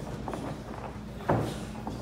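A gloved punch landing with a single sharp thump a little over a second in, over a few fainter knocks in a large gym room.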